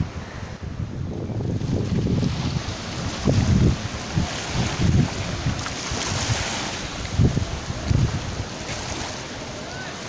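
Wind buffeting the microphone in irregular gusts over the steady wash of sea waves on the shore.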